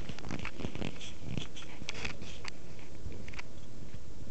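Handling noise from a small handheld camera being moved about and covered: irregular rustles and sharp clicks against the microphone over a steady hiss, thinning out after about three and a half seconds.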